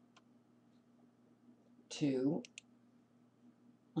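Two quick computer-mouse clicks about halfway through, right after a brief muttered vocal sound. Otherwise low room tone with a faint steady hum.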